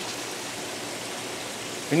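Steady rush of running water from an aquarium holding system: water flowing and splashing through plumbing into rows of fish tubs, an even hiss with no rhythm or knocks.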